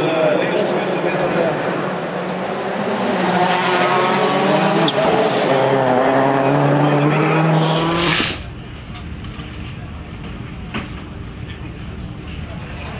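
Ford Focus RS WRC rally car's turbocharged four-cylinder engine running hard, its pitch rising and falling as it accelerates and slows, with one sharp crack about five seconds in. After about eight seconds it gives way abruptly to much quieter background noise.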